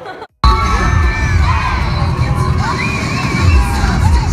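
A large crowd of mostly high-pitched young voices screaming and cheering, starting abruptly about half a second in, over loud music with a heavy, regular bass beat.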